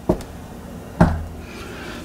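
Two knocks with a fist on a wooden interior door, about a second apart, copying the two little bumps that were heard before the chair fell.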